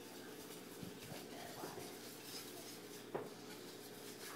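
Faint scraping and light ticks of a utensil stirring crepe batter in a stainless steel mixing bowl, with one sharper click about three seconds in.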